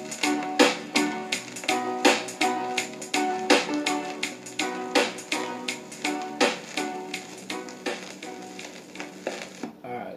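A reggae dub version playing from a 45 rpm vinyl single on a record player, with evenly repeating instrument chops over a bass line. The track fades and ends just before the close.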